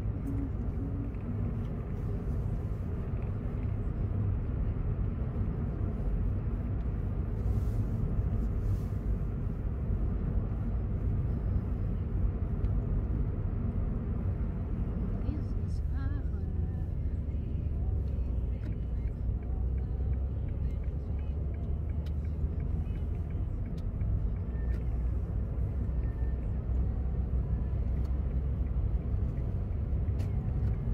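Car driving slowly, heard from inside the cabin: a steady low engine and road rumble.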